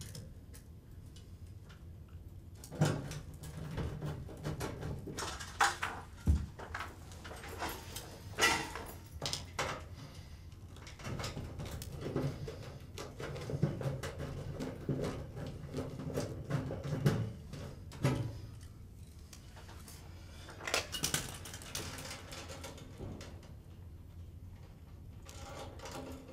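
Irregular metallic clicks, clinks and rattles of hand tools and parts in a sheet-metal fluorescent light fixture as the ballast is unfastened with a quarter-inch nut driver and its wires are handled.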